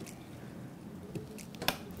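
Plastic RAM filler stick being pressed into a motherboard DIMM slot, with a few small clicks in the second half as the slot's retaining clips snap shut.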